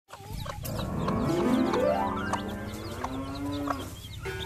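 A flock of young chicks peeping, many short high chirps one after another, over background music.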